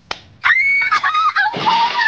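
A group of young women squealing high and laughing excitedly, after a single sharp clap just at the start.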